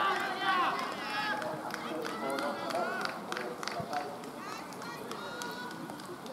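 Several men's voices calling out and shouting across an open field, overlapping, loudest in the first second or so, with a few sharp clicks among them.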